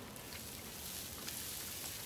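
Water squirted from a squeeze bottle onto the warm cast-iron Blackstone griddle top, sizzling steadily as it turns to steam. The hiss starts suddenly and holds steady.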